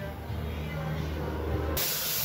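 Low steady hum, cut off about three-quarters of the way in by the loud, even hiss of a gravity-feed air spray gun spraying paint.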